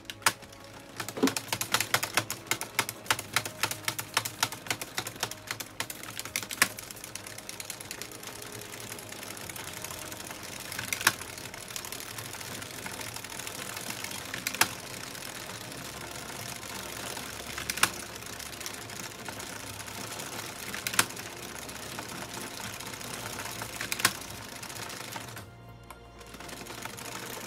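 Addi Express circular knitting machine being hand-cranked: a quick run of plastic clicks during the first few seconds, then the steady rattle of its needles travelling round the cam track, with a single louder click about every three seconds.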